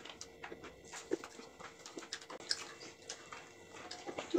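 Faint eating sounds at a meal on the floor: soft chewing and scattered small clicks and taps of fingers and food on plates, over a thin steady hum.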